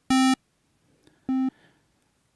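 Groove Rider GR-16 drum-machine app's synth oscillator sounding two short notes of the same pitch, about a second apart. The first, on the pulse wave, is bright and buzzy. The second is less bright after the waveform is switched.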